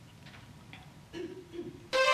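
A quiet room with a few faint small sounds and a brief low tone about a second in. Right at the end, music swells in loudly to start a worship song.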